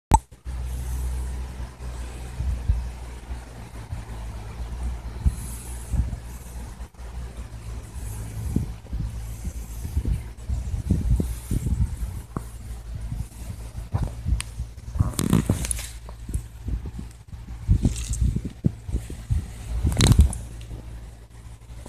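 Handling noise from a handheld camera close to the microphone: a steady low rumble with frequent soft thumps, and a burst of scraping and rustling about three-quarters of the way through.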